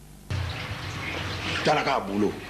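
A steady hiss of room noise comes in abruptly about a third of a second in, and a man starts speaking a little past halfway.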